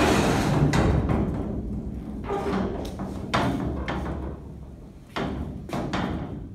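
Steel rear swing gate and slider door of a stock trailer being worked open: a loud metal rattling and rumbling that fades over the first couple of seconds, then several separate clanks and knocks, two of them near the end.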